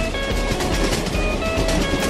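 Children's background music with short plucked melody notes, over a steady rhythmic chugging sound effect of a cartoon train.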